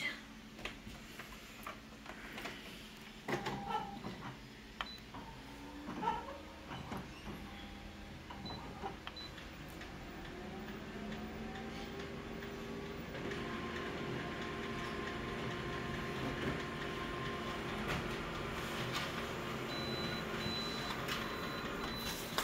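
Colour office photocopier making a copy. A few clicks and knocks come first, then from about ten seconds in the machine runs up into a steady mechanical hum with whirring tones, which grows louder as it prints.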